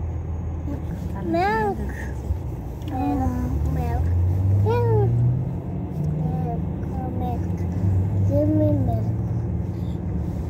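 Car driving, with engine and road noise as a steady low drone inside the cabin that rises in pitch a couple of times. Over it come about six short high-pitched cries, each rising and falling.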